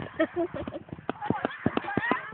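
A woman laughing, over a run of irregular sharp clicks and taps.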